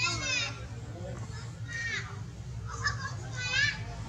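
Young macaques giving short, high-pitched squealing calls, four in all, each bending in pitch, over a steady low hum.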